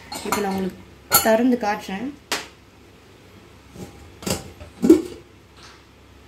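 A metal utensil knocking and clinking against a cooking pot: about five separate sharp knocks in the second half, the loudest near the end.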